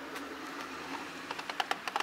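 Toy push lawn mower clicking and rattling as it is pushed over grass, the clicks coming quicker and more often from about a second in.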